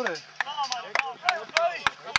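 Men shouting and calling across a football pitch, broken by about half a dozen sharp clicks a few tenths of a second apart.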